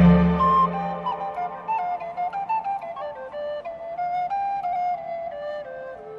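Instrumental background music: a melody of short stepping notes over a deep low note that fades out in the first second or so.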